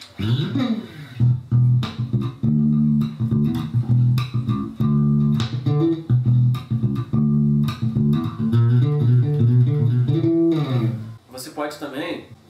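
Electric bass played fingerstyle: a groove of low plucked notes, opening with a note slid downward in pitch and closing with another downward slide, a demonstration of sliding between strings.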